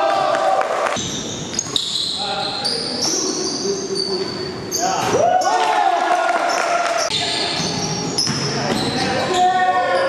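Pickup basketball game in a large gym: the ball bouncing on the hardwood floor, sneakers squeaking in short high chirps, and players calling out to each other across the court.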